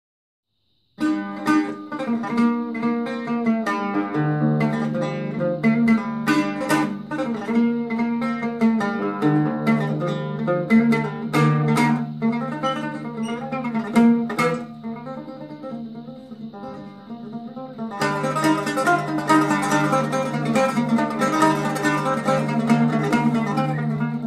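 Solo oud (barbat) playing a melody of plucked single notes, with low notes ringing underneath, starting about a second in. It grows softer for a few seconds in the middle, then turns to a denser run of rapid picking near the end.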